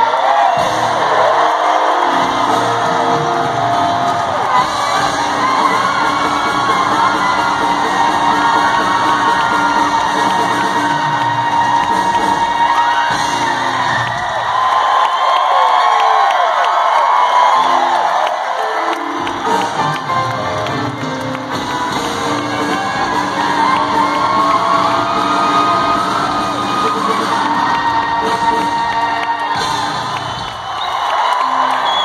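A live rock band playing in an arena, with a large crowd cheering and whooping over the music. The bass drops out for a few seconds about halfway through, then comes back.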